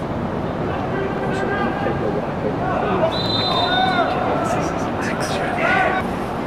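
Players' voices shouting on a soccer pitch, unintelligible over a steady background noise, with a short high whistle about three seconds in.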